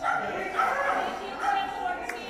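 A dog yipping and whining in high, wavering tones.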